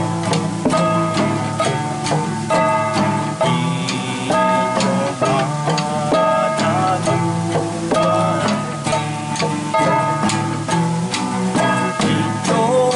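Classical guitar strummed in a steady rhythm, with a man singing along.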